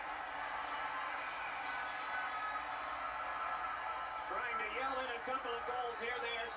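Televised hockey game heard through the TV's speakers in the room: a steady hum of arena background noise, then a commentator starts talking about four seconds in.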